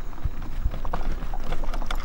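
Tyres rolling over a gravel road: irregular clicks and knocks of stones under the wheels, over a low wind rumble on the microphone.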